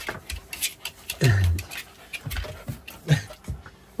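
Dog panting and whimpering, with a couple of short whines that fall in pitch, one about a second in and one near the end.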